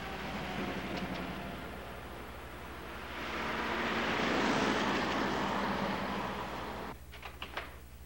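Film soundtrack of a motor vehicle going by, its noise swelling to a peak and easing off, then cut off suddenly near the end and followed by a few light clicks.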